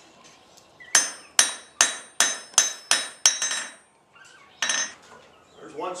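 Blacksmith's hand hammer striking iron on an anvil: seven quick ringing blows, about two and a half a second, then one more after a short pause.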